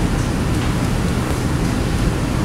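Steady hissing background noise of a lecture room, with no speech.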